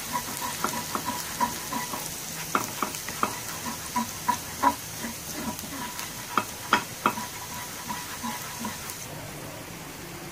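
Minced garlic and ginger sizzling in hot oil in a pan, with a spatula scraping and clicking against the pan as it is stirred. The sizzle fades near the end.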